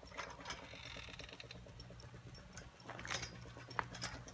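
Faint, steady low mechanical hum, with a few soft clicks scattered through it.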